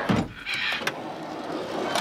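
Heavy solid-wood drawer sliding on its runners, a continuous scraping rumble with a knock at the start.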